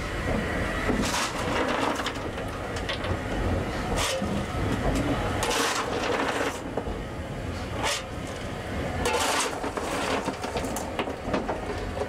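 Irregular scraping and clatter of a steel coal shovel on coal and on the steel footplate as a CGR 6th Class steam locomotive's firebox is fired, over a steady low rumble.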